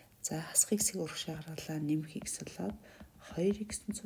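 Speech: a person's voice talking in short phrases with brief pauses.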